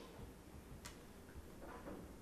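Near silence: quiet room tone with one faint sharp click a little under a second in and a soft brief rustle near the end.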